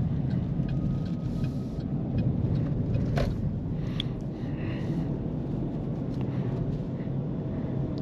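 Steady low road and tyre rumble inside the cabin of a 2023 Chevy Bolt EUV electric car driving at low speed, with no engine note. Two faint clicks come about three and four seconds in.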